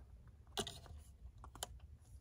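Faint handling clicks from a scoped rifle being lowered onto a tripod, with two sharper clicks about half a second and a second and a half in.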